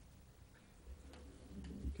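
Quiet room tone with a steady low hum. A couple of faint clicks come about a second in and again a little later, and a softly spoken "okay" comes at the very end.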